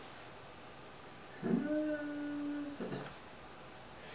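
A person humming one note, sliding up into it about a second and a half in and holding it steady for just over a second, followed by a brief low vocal sound.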